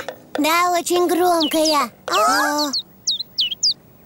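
Cartoon children's voices sing a few held notes of a short tune. In the second half a bird answers with a quick run of short, falling high chirps.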